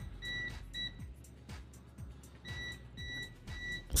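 Peakmeter PM18C multimeter's non-contact-voltage alarm beeping rapidly, a high beep about three to four times a second, as it senses the live wall outlet. The beeping runs through the first second, stops, and starts again about two and a half seconds in.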